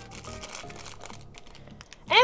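Faint background music under light crinkling and rustling as a plastic blind-bag packet is torn open and a miniature is pulled out.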